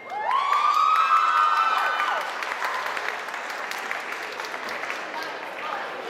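Audience applauding and cheering. One long high-pitched scream rises and holds for about two seconds near the start, and the clapping then slowly dies down.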